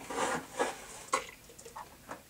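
A short breathy laugh, then a sharp click about a second in and a few faint ticks and taps, like a cup and things on the keyboard being handled.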